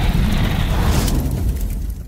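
Logo-sting sound effect for an animated outro: a loud, steady, boom-like rumble with a heavy deep low end, starting to fade near the end.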